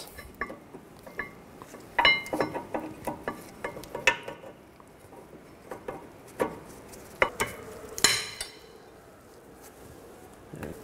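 Irregular metallic clicks and clinks as new brake pads are pushed and seated into the caliper bracket's pad clips on a rear disc brake. The loudest clink, about eight seconds in, rings briefly.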